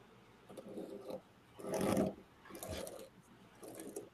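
Utility knife drawn along a metal ruler, scoring through a sheet of wood veneer in four scraping strokes about a second apart, the second the loudest.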